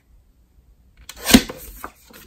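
Sliding-blade paper trimmer cutting through a photo print: one short, sharp cut a little over a second in, followed by a small click from the blade carriage.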